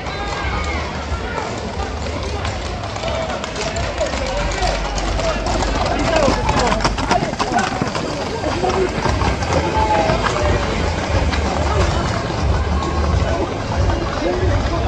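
Crowd voices and shouts mixed with the clatter of Camargue horses' hooves on the asphalt street as the mounted riders gallop past, the clatter densest and loudest in the middle.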